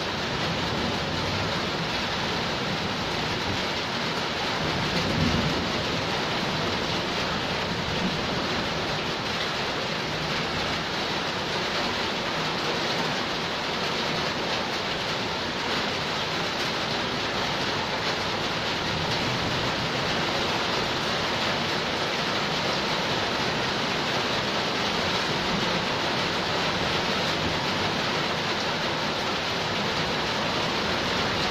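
Heavy rain falling steadily on a flooded concrete yard and its puddles: an even, unbroken hiss.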